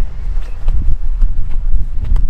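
Wind buffeting the microphone in an uneven low rumble, with faint irregular thuds of a football being juggled on the feet and knees.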